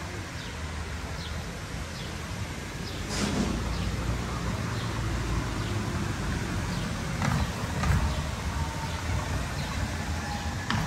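Outdoor street ambience: a steady low rumble, likely from passing traffic, that swells a little about three seconds in and again near the end, with a few scattered light clicks.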